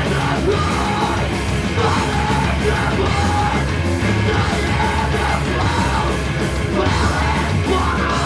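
Hardcore punk band playing live: loud, dense distorted band sound with drums and shouted vocals.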